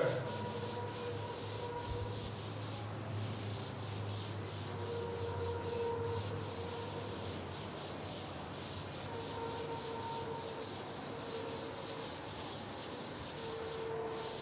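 Chalkboard duster wiped back and forth across a chalkboard, erasing chalk in quick, evenly repeated strokes, several a second.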